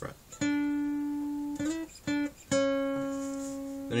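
Acoustic guitar playing single plucked notes on the G string: a note held about a second, a short slide up, a brief return to the first note, then a slightly lower note left ringing and slowly fading. It is the solo's opening phrase of 7th fret, slide to 9th, back to 7th, then 6th fret.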